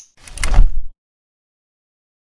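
Logo-sting sound effect: a short whoosh swelling into a deep boom, lasting under a second.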